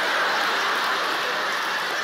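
Large audience laughing and applauding together, a steady wash of crowd noise that slowly dies down.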